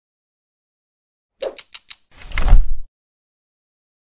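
Sound-effect sting for an animated logo intro: four quick sharp clicks with a high ring, then a louder rush of noise with a deep boom that builds and cuts off suddenly just before three seconds in.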